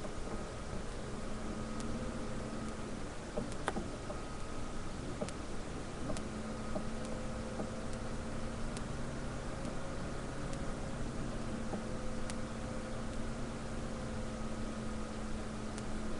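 Masala paste frying in a pan: a steady sizzling hiss over a faint steady hum, with scattered light clicks from a metal spatula stirring it.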